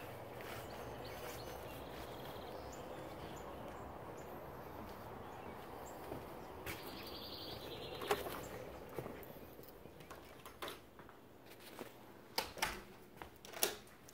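Quiet outdoor yard ambience: a steady low background with faint bird chirps. Near the end come a few short clicks and knocks.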